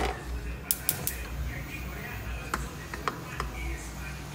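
A few sharp clicks from a gas hob's igniter as the burner under a frying pan is lit: three close together about a second in, then a few more scattered later, over a steady low hum.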